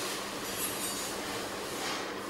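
Steady background hiss with a faint low hum underneath.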